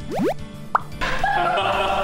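Light background music with quick rising cartoon 'bloop' sound effects in the first second, then a voice comes in about a second in.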